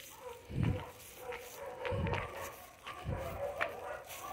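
Slow footsteps on a dirt road, three dull thuds about a second apart, with dogs barking faintly.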